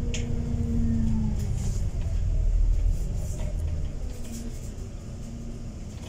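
Cabin sound of an ADL Enviro400 MMC double-decker bus on the move: a steady low engine and road rumble that swells about two seconds in and eases off after four, with a faint whine that fades out about a second in.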